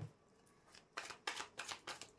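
Tarot deck being shuffled by hand: a handful of short card strokes starting about a second in, after a near-silent start.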